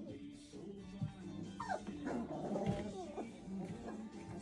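F1 Sheepadoodle puppies yipping and whimpering as they wrestle, a few short cries rising and falling in pitch from about one and a half to three seconds in, over background music.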